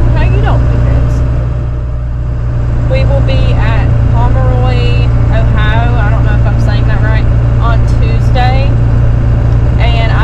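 Steady low drone of a vehicle's engine and road noise heard inside the cabin while driving, with a voice over it from about three seconds in.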